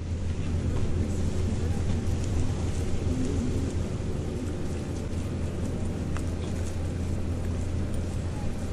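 Steady low engine hum from a moored river cruise ship, with faint outdoor background noise.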